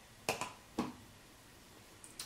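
Two short, sharp clicks about half a second apart, from an empty makeup compact being closed and set down on a pocket digital scale.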